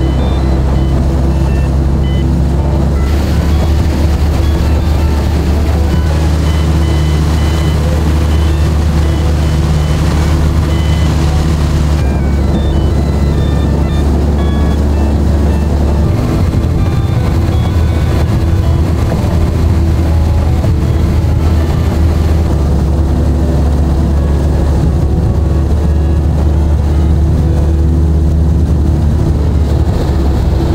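Tohatsu 20 hp four-stroke twin-cylinder outboard motor running steadily as the aluminium boat moves along, with hull and water noise; the engine note shifts about halfway through.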